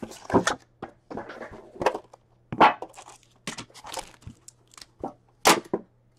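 Plastic shrink-wrap and foil-wrapped trading card packs crinkling and crackling in irregular bursts as a card tin is unwrapped and its packs are taken out, with a couple of louder sharp snaps.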